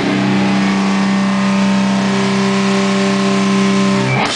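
Distorted electric guitar chord held and ringing out, with a higher note joining about halfway through.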